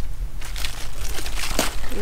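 Large Swiss chard leaves rustling and crinkling as hands handle them, with a few sharp crackles about half a second, one second and a second and a half in.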